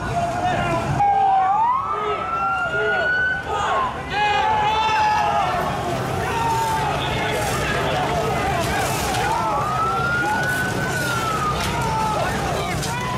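Police siren wailing, its pitch sliding slowly up and back down twice, over shouting voices from a crowd.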